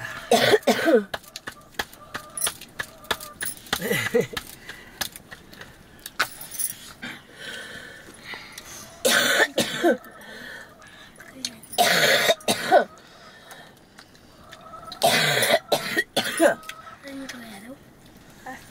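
People talking in Nepali over a meal, with several louder bursts of voice and scattered small clicks and knocks between the words.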